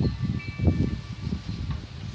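Porch wind chimes ringing faintly with a few steady tones, over low rumbling on the microphone.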